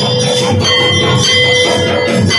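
A brass temple bell rung steadily by hand, its ringing held over devotional aarti music.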